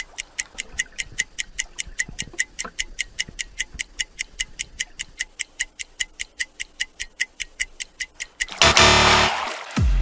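Clock-ticking sound effect, fast and even at about four sharp ticks a second, counting off a breath-hold. Near the end the ticking stops and a loud burst of sound about a second long cuts in.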